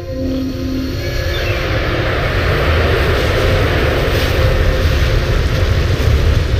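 Film sound effect of a large aircraft passing low overhead: a deep rumble that swells over the first two or three seconds and then stays loud.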